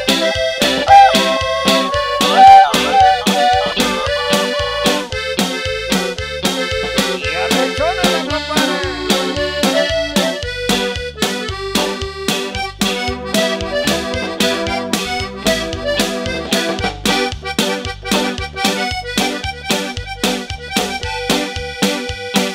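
Live norteña band playing an instrumental passage, with an accordion lead over a steady beat of bass and drums and no singing.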